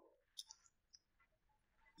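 Near silence: room tone, with two faint short clicks about half a second in.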